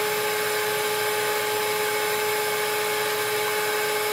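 Hydraulic power unit's electric motor and pump running steadily: a constant whine with a hiss over it.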